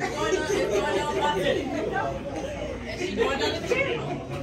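Several people talking over one another in a large room: indistinct chatter with no clear words.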